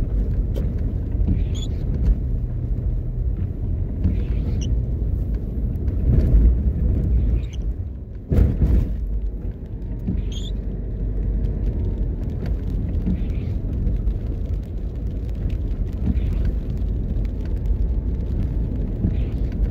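Steady low rumble of a car driving along a wet street, heard from inside the car, with a sudden thump a little past halfway. A few faint high chirps come and go.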